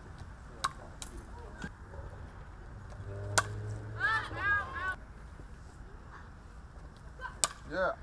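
Softball pitches: two sharp cracks about four seconds apart as pitched balls strike, with a few fainter clicks early on. Spectators shout briefly after each crack, the second time a call of "yeah".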